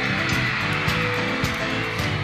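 Live band playing a steady vamp: sustained keyboard chords over a regular beat of light cymbal ticks.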